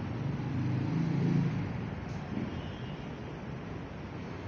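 A motor vehicle passing, its engine growing louder to a peak about a second and a half in and then fading, over a steady low rumble of traffic.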